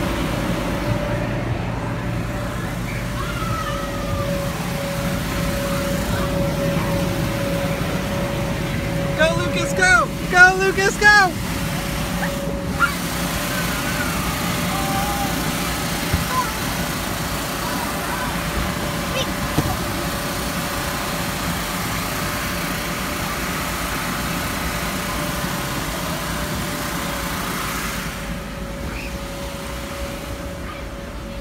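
Steady whirring hum of the air blower keeping an inflatable obstacle course inflated. About ten seconds in, a child gives several loud, high-pitched shrieks.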